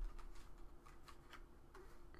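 Faint, irregular light clicks and ticks of tarot cards being handled in the hands, several times over two seconds.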